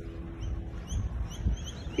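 Small birds chirping faintly with short, high calls, over a low outdoor rumble.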